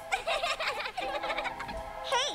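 High-pitched cartoon children's voices, rapid and warbling, with no clear words, over a few steady held music tones.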